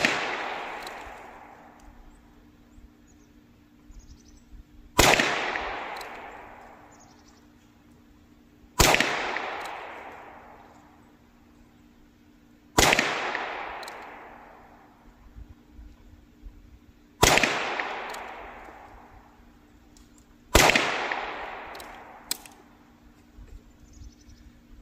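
Six .22 LR shots from a Ruger Wrangler single-action revolver, fired one at a time about four seconds apart. They are heard from beside the target, some way from the gun, and each shot echoes away over a couple of seconds.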